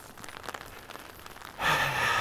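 A man's audible breath in, a short rushing hiss, about a second and a half in, after near quiet with a few faint ticks.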